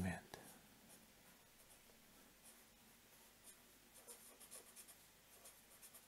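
Faint scratching of a felt-tip pen writing on paper, in short strokes.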